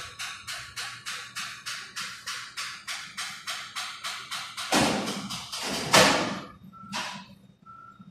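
A switchgear vacuum circuit breaker's mechanism clicking evenly, about four clicks a second, then stopping. Two loud thuds about a second apart follow, then a smaller knock and two short high beeps near the end.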